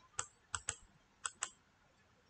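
Five faint, short clicks from a computer being operated by hand, the last four in two quick pairs.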